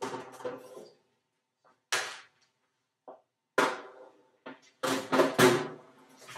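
Metal baking sheet clanking against the oven rack as it is pushed into the oven: separate ringing clanks about two and three and a half seconds in, then a quick run of three louder clanks near the end.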